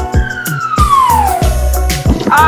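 A falling whistle sound effect, one smooth tone sliding down in pitch across about two seconds, over children's background music with a steady beat.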